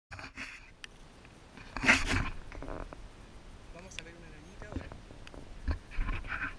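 A person's voice: a short, loud breathy burst about two seconds in, like a sneeze or a burst of laughter, then fainter vocal sounds.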